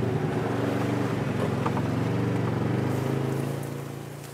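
Side-by-side UTV engine running steadily as the vehicle drives along a dirt track, its pitch shifting a little; the sound fades away near the end.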